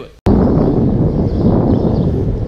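After a sudden cut a quarter second in, a loud steady rumble of wind buffeting the microphone and a longboard rolling on pavement while riding.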